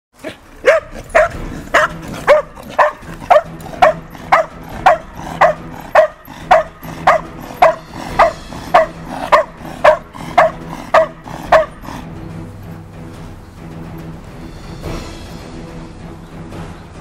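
Belgian Malinois barking in a steady rhythm, about two barks a second, as a bark-and-hold on a protection helper standing in a blind; the barking stops about twelve seconds in. Background music plays throughout.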